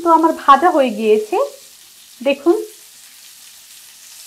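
Chicken and vegetable shashlik skewers frying in shallow oil in a pan, a faint steady sizzle. A woman's voice speaks over it for the first second and a half and again briefly past the two-second mark.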